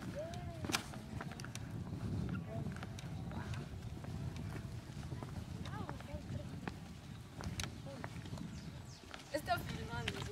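Indistinct voices of people talking at a distance over a steady low rumble, with footsteps and a few sharp clicks. A cluster of higher chirpy voice sounds comes near the end.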